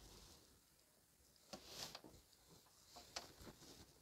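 Near silence, with a few faint clicks of handling as a soldering iron works a capacitor free from a circuit board; the loudest comes just under two seconds in.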